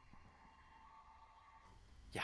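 Near silence, with a faint steady tone dying away.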